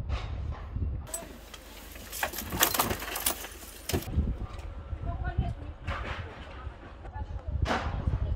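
Outdoor field sound with people's voices. From about one to four seconds in there is a burst of harsh noise with many rapid clicks.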